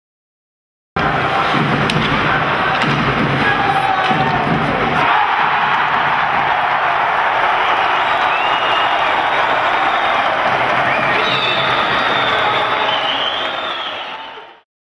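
Ice hockey arena crowd cheering a goal. It comes in suddenly about a second in, with heavy low thuds under it for the first few seconds, and fades out near the end.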